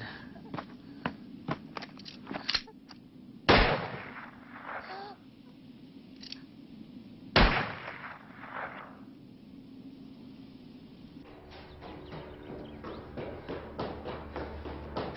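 Two gunshots about four seconds apart, each a sharp crack followed by a fading echo, with several fainter clicks in the first few seconds.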